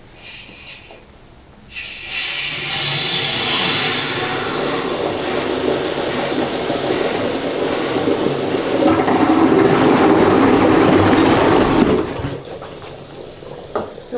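Water draining out of a leafcasting machine's basin down through the mesh screen, a loud steady rush that starts about two seconds in and cuts off about two seconds before the end, after a short burst of noise at the start. The draining water carries cellulose pulp down into the holes of the damaged pages, where the fibres settle to fill the gaps.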